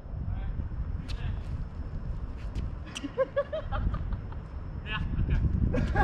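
Tennis ball struck by rackets in a rally, each hit a sharp pop, the loudest about three seconds in, over a steady low rumble. Short pitched calls come in just after the loudest hit and again near the end.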